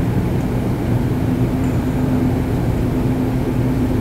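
Steady low mechanical hum of a running machine in the room, even and unchanging.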